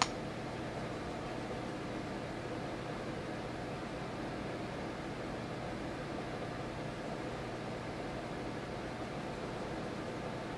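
Steady background hiss with a faint hum, the room tone of a small room, with a short click at the very start.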